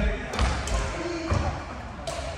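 Badminton rally on a wooden sports-hall court: a few sharp racket strikes on a shuttlecock, with heavy footsteps thudding on the wooden floor around them.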